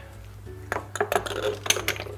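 Rummaging through an open kitchen drawer: a quick run of light, irregular clicks and clinks of objects knocking together, starting about a second in, over background music.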